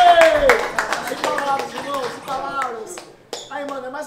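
A few people clapping and shouting: a long drawn-out shout rises and falls over the first half second amid fast clapping. The clapping thins out after about a second while voices carry on.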